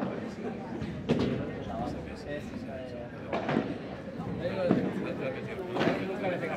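Padel ball being struck by paddles and bouncing during a rally: about six sharp knocks, roughly one every second, with people talking in the background.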